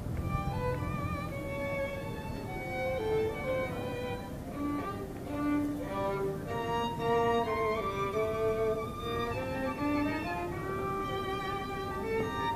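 Two violins playing a duet, a melody of changing notes with some held notes wavering in vibrato.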